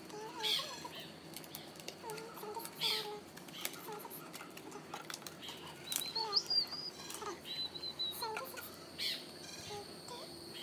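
Cardboard puzzle sheets and pieces rustling and tapping as they are handled, with scattered light clicks. Bird calls sound in the background, with a high chirping trill about six seconds in.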